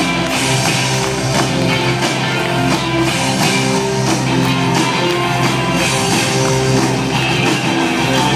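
Rock band playing live, with electric guitar and drum kit over keyboards in a steady, full band sound, heard from the audience seats of a concert hall.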